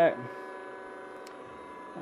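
Brushless outrunner motor spinning at a steady speed on its electronic speed controller, giving a steady electrical whine of several tones held at one pitch.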